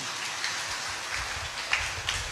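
Audience applauding steadily, a crowd of many hands clapping at once.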